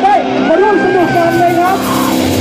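A voice through the loud live sound, holding long wavering notes that rise and fall and break off near the end.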